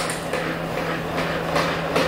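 O-Cedar EasyWring spin mop being wrung out: the foot pedal is pumped to spin the wet mop head in the bucket's wringer basket, a steady rattling whir with regular knocks, throwing off excess water before mopping.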